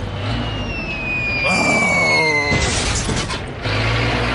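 Cartoon sound effects: a long descending whistle as the junked car falls through the air, then a burst of clattering noise about two and a half seconds in, followed by a low hum near the end.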